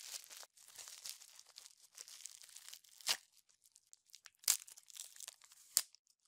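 Plastic bubble wrap crinkling and rustling as it is pulled open by hand, with a few sharper snaps, the loudest near the end.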